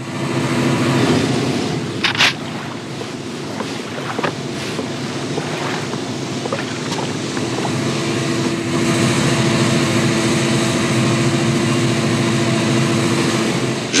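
Steady drone of a ship's engine over a wash of sea and wind noise, from an old film soundtrack, with a sharp crack about two seconds in.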